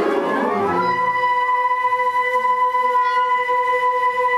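A concert band's full ensemble dies away within the first second, leaving a single steady note held by the flute section.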